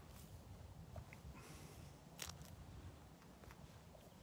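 Near silence: faint low outdoor background noise, with a faint tick about two seconds in.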